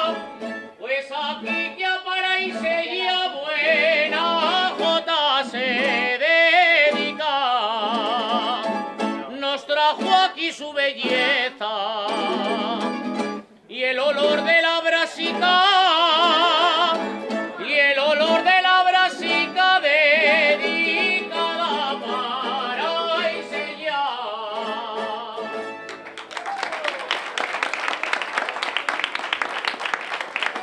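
A male voice sings an Aragonese jota with heavy vibrato, backed by a rondalla of bandurrias and guitars strumming and plucking. About four seconds before the end the song stops and the crowd applauds.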